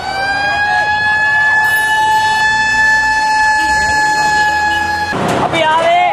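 A horn sounding one long blast at a single steady pitch, which cuts off abruptly about five seconds in. Voices shout after it.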